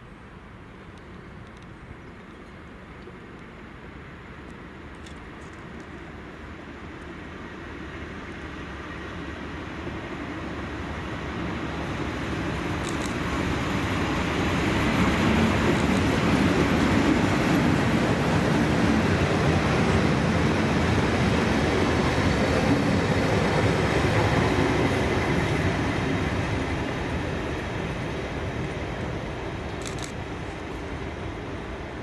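Class 37 diesel-electric locomotive, with its English Electric V12 diesel engine, running through a station without stopping: engine and wheel-on-rail noise build for about fifteen seconds, stay loud for about ten seconds as it passes, then fade as it draws away.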